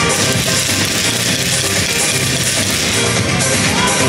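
Samba music with a busy, steady drum rhythm, played loudly over a loudspeaker.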